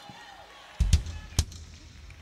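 Handheld microphone handled and raised through the PA: a loud low thump about three-quarters of a second in, then two sharp knocks, followed by a low hum from the open mic.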